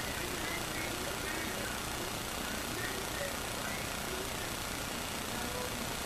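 Steady hiss of room and microphone noise, with faint, indistinct speech in the background.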